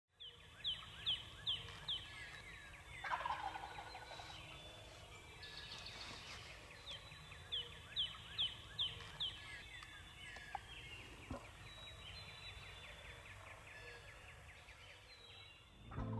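Wild turkey gobbling in spring woods, with other birds singing around it: two runs of four or five quick falling whistles stand out as the loudest calls.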